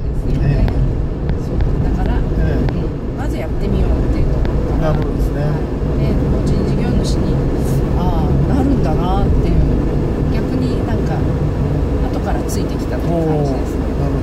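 Steady road and engine rumble inside the cabin of a light cargo van (kei van) driving through town, with conversation over it.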